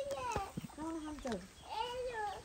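Goats bleating: a few drawn-out calls, each rising and falling in pitch.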